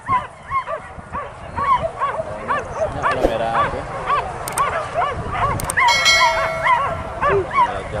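Leashed boar-hunting dogs yelping in a rapid, steady string of short high yips, about three a second, with a brief steady tone about six seconds in.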